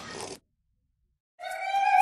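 A soft noisy tail that stops dead after about half a second, a second of complete silence, then a single high note held steadily by an operatic singer, starting about a second and a half in.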